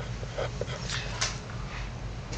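Pen scratching on paper in a few short strokes while writing, over a steady low hum.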